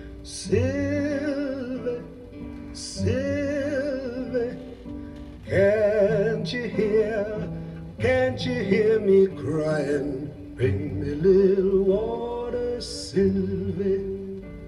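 Mono vinyl record played through a Denon DL-102 cartridge: a live folk song, a male voice singing long, wavering held notes over acoustic guitar.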